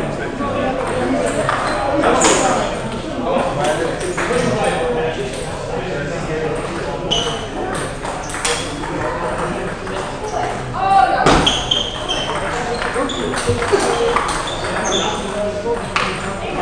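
Table tennis balls clicking off bats and bouncing on the tables in irregular rallies across several tables, ringing in a large hall, with people talking in the background.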